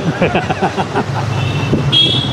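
Motor scooter engine running steadily as it rides through a busy street, with street traffic around it and a short high-pitched horn beep near the end.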